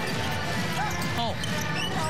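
Basketball dribbled on a hardwood court during live play, over steady arena background noise.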